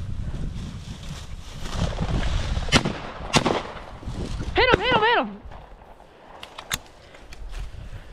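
Footsteps swishing through dry grass, then two shotgun shots about two-thirds of a second apart at a flushed game bird, followed by a short wavering call.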